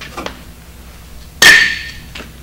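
A removed brake pad set down on metal: a single sharp metallic clank about one and a half seconds in, with a short high ring that fades quickly.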